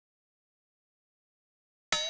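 Complete silence, the soundtrack cut out entirely, broken only by a sudden click near the end as sound comes back.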